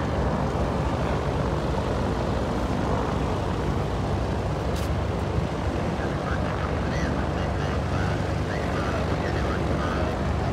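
Steady engine rumble of light propeller airplanes taxiing by.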